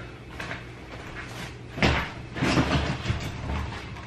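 Irregular thumps and rustling as a person settles into a padded gaming chair, the strongest knock about two seconds in, over a steady low hum.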